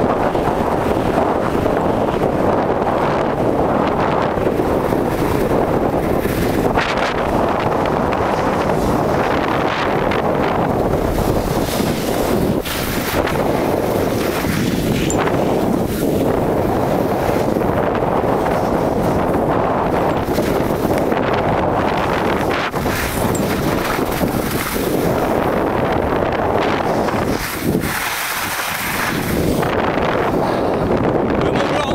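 Wind buffeting the camera microphone during a fast downhill ski run, mixed with the hiss of skis sliding over snow. A steady, loud rushing that swells and eases, briefly dropping near the end.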